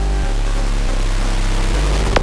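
Electronic dance music build-up: a rising white-noise sweep over sustained bass notes that change pitch twice.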